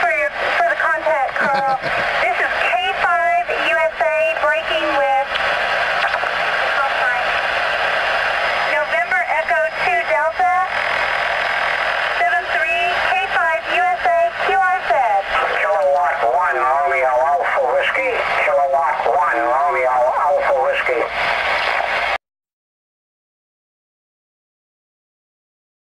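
A voice coming over the air through a Ranger RCI-69FFC4 10-meter transceiver's speaker, indistinct and narrow-sounding over steady receiver hiss. It cuts off suddenly about two seconds before the end.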